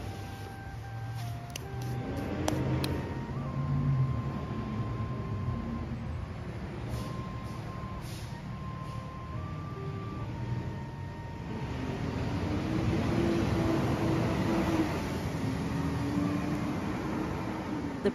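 A propane delivery truck running in the distance, its engine a steady low hum with a few short level tones over it. Partway through, a man's distant voice is raised in shouting over the engine.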